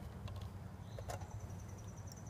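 Faint outdoor background: a steady low hum, a couple of light clicks, and a high, rapidly pulsing animal call that starts about halfway through.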